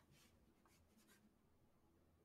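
Near silence, with only a very faint scratching of a marker writing on a board.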